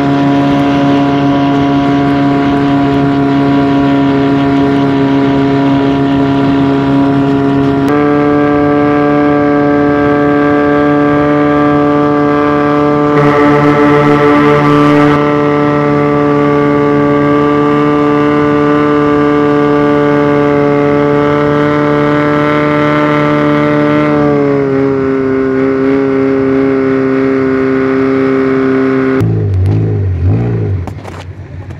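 Speedboat engine running steadily under way with an even drone. Its pitch steps up about a quarter of the way in, eases down later, and drops again near the end as the boat slows. A brief rushing noise comes about halfway through.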